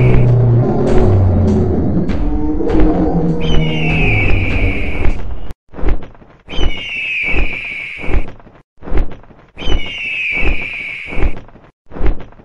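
Sound-effect music for an animated logo outro: a heavy, bass-laden musical bed with a high, falling sound effect, which drops out abruptly about five and a half seconds in. Then a string of sharp hits follows, with the same high falling sound returning twice more.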